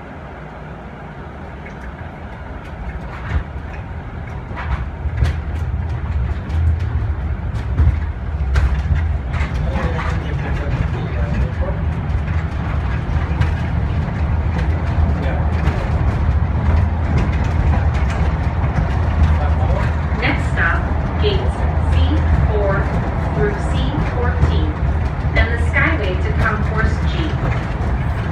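Airport people-mover tram heard from inside the car as it pulls away and picks up speed: a steady low rumble and hum that grows louder over the first several seconds, with scattered clicks and rattles. Voices can be heard in the car through much of it.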